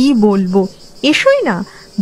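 Crickets chirping steadily in the background behind a woman's storytelling voice, which speaks in the first half-second and again about a second in.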